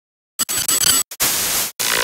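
Analogue TV static sound effect for an intro: after a short silence, loud hiss cutting in and out in several choppy bursts, like a glitching picture.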